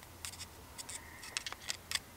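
Faint, irregular small clicks and scrapes of a hand pick working a seal down around a newly installed injector in a 12-valve Cummins engine.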